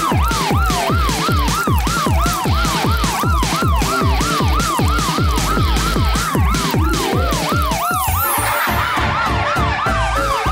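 A loud electronic siren-like wail sweeping quickly up and down, about three times a second, over a steady pounding beat. The pattern briefly changes about eight seconds in, then resumes.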